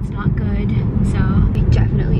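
Steady low rumble of road and engine noise heard from inside the cabin of a car moving on the freeway.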